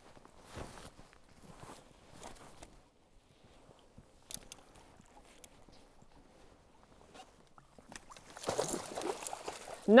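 Faint scattered knocks and small water sounds as a musky is played at the side of a kayak. Near the end come louder splashing and water noise as the fish is scooped into a mesh landing net.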